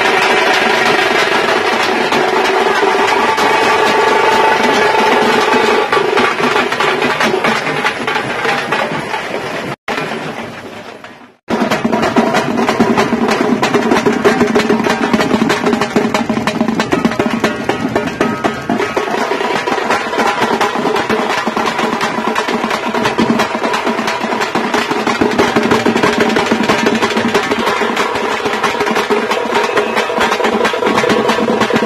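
A troupe of tamte frame drums beaten fast with sticks, together with a large bass drum, playing a dense, driving rhythm. The drumming fades out about ten seconds in, then cuts back in abruptly a second and a half later.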